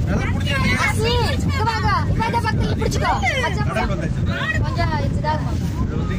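Several people chattering over the steady low rumble of a passenger boat's engine under way.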